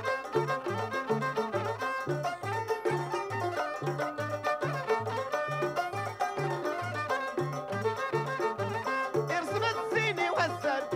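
Traditional Amazigh (Tachlhit) folk music without singing: a fiddle melody over a steady, repeating two-note bass pattern and hand percussion, with a sliding high note near the end.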